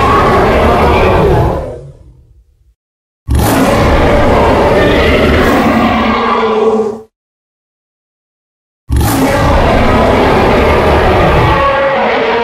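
Tyrannosaurus rex roar sound effect: three long, loud roars. The first is already under way and dies away about two seconds in, the second runs for about four seconds, and the third begins about nine seconds in.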